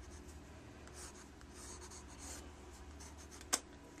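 Graphite pencil scratching lightly across drawing paper in a series of sketching strokes, with one sharp click about three and a half seconds in.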